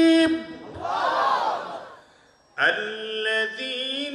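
A man's voice chanting melodically through a microphone: a long held note cuts off shortly in, followed by a breath and a brief pause, then a new chanted phrase begins a little past halfway.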